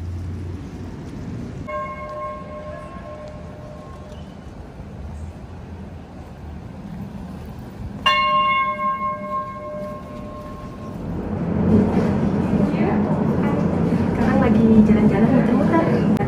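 Tram bell ringing twice, each a held, ringing chime lasting two to three seconds; the second, about eight seconds in, starts sharply and is louder as the tram arrives at the stop. After that a louder, steady rumble of tram and passenger noise builds up.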